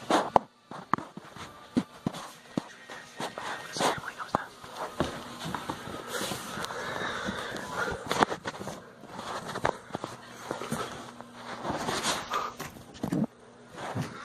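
Irregular knocks, clicks and rustles of a phone camera being carried, fingered and set down, with footsteps and a low, indistinct voice in places.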